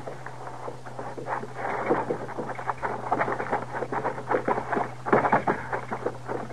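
Radio-drama sound effects of feet scrambling down over rocks and loose gravel: a dense, irregular run of scrapes and clicks, a little heavier about five seconds in. A steady low hum from the old recording runs underneath.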